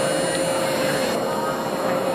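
Shapeoko 2 CNC milling machine starting its cut, its rotary-tool spindle running with a steady whine, over background crowd chatter.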